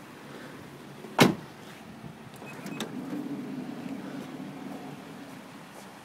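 A sharp click about a second in, then a steady electric motor hum for about three seconds from the Nissan Elgrand E51's power sliding side door as it runs.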